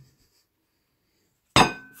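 About a second and a half of quiet room, then a glass beer bottle set down on a wooden table: one sharp clink near the end that rings briefly with a few high glassy tones.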